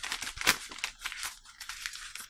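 A sheet of paper being crumpled in a fist: a run of dry crackles, loudest about half a second in, thinning out toward the end.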